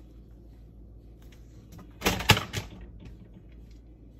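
A short clatter of several sharp knocks about two seconds in, lasting under a second, with one loudest strike in the middle: toys on a shelf knocked about as a Moluccan cockatoo drops its plush crab toy and moves among the plastic toys.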